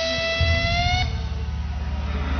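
Live rock band at the end of a song: a held, slightly rising high guitar note cuts off about a second in, while a loud low rumble carries on beneath it.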